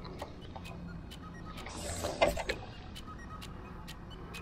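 Spinning rod cast of a live bait: a short hiss of line running off the reel about two seconds in, ending in a small splash as the bait lands. Faint, evenly spaced ticks run underneath.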